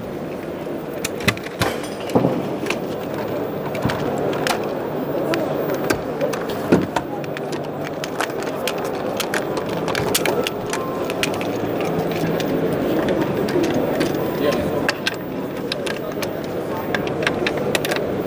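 Steady background chatter of a busy hall, with scattered sharp clicks and knocks as a carbon-fibre mid-level spreader is fitted to a flowtech 100 tripod's legs and adjusted.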